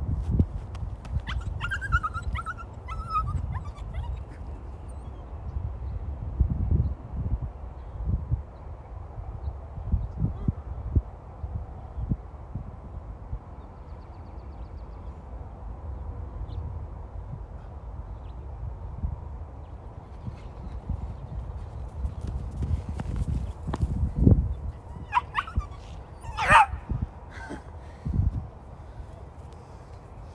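A dog whining briefly a few seconds in, then yipping a few times near the end, over uneven low rumbling.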